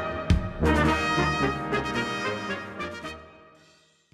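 Bohemian-style brass band (Blaskapelle) playing, with trumpets and trombones, a sharp accent about a third of a second in, then the music fading away to nothing near the end.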